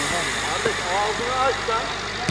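Several voices shouting short calls, rising and falling in pitch, about half a second in and again after a second, over a steady low background hum.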